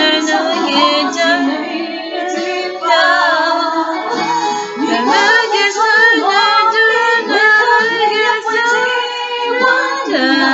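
A woman singing a song into a handheld microphone, her voice held and bending through sustained sung notes.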